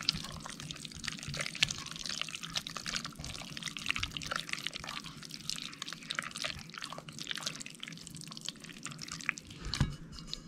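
Gloved hand working on a greasy truck wheel spindle: soft, irregular wet, sticky clicks and smacks.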